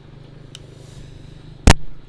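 A single sharp, very loud knock near the end, over a faint steady low hum.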